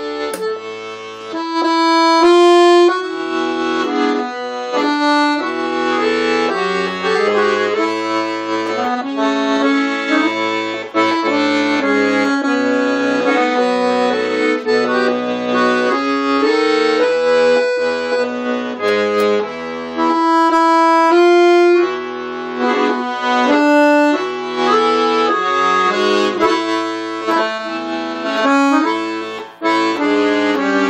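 Piano accordion played solo: a melody of held, reedy notes on the right-hand keyboard over low bass notes that come and go beneath.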